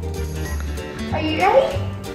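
Background music with a steady bass beat, over which a husky-type dog whines and yips with a call rising in pitch in the second half.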